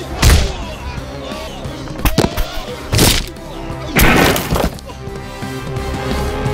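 Film fight-scene sound effects: a series of punch and impact hits, the longest and loudest a crashing hit about four seconds in, over dramatic background music.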